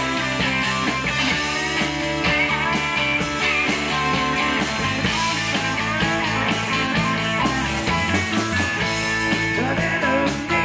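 Live rock and roll band playing an instrumental passage: electric guitars over a drum kit keeping a steady beat.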